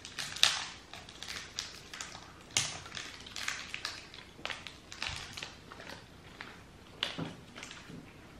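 Crinkling candy wrappers as individually wrapped Kasugai Frutia strawberry gummies are unwrapped: irregular small crackles and rustles, with a few sharper crackles.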